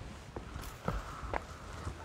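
A few footsteps about half a second apart, over a low background hiss.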